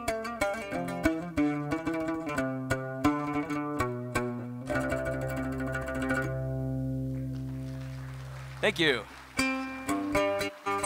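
Solo oud playing: a run of quick plucked notes, then a held chord left ringing and slowly dying away for several seconds. Near the end comes a brief swooping sound, then quick plucking starts again.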